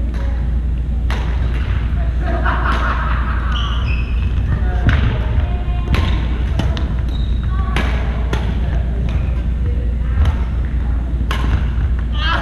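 Badminton rally: sharp racket-on-shuttlecock hits, roughly one a second, with brief sneaker squeaks on the wooden court, echoing in a large gym over a steady low hum and distant players' voices.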